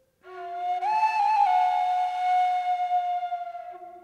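Music: a flute-like wind instrument holding one long note, with a brief wavering turn about a second in, then fading away near the end, over a fainter lower tone.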